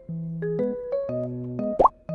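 Light background music played on keyboard, with stepping melody notes over held bass notes. Near the end a short pop-like sound effect sweeps quickly up in pitch, the loudest moment, as a caption pops up.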